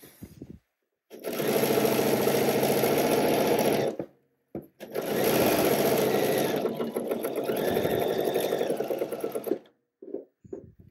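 Bernina sewing machine stitching a seam at speed, in two runs of about three and five seconds with a short pause between them.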